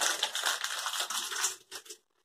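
Paper crinkling as it is handled and crumpled by hand: a quick run of small crackles that fades out near the end. It is most likely the backing paper just peeled off the appliqué.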